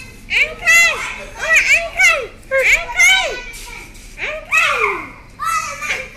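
Children's voices calling out while they play: a string of short, high-pitched calls, each rising and falling in pitch, with a brief lull about four seconds in.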